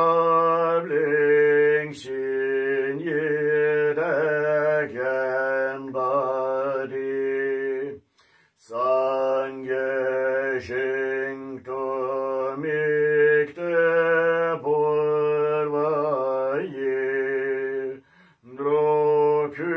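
A man chanting a Tibetan Buddhist liturgy solo in a slow, sustained melody, with one breath pause about eight seconds in.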